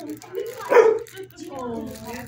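A dog barks once, loud and sharp, a little under a second in, followed near the end by a longer held vocal sound.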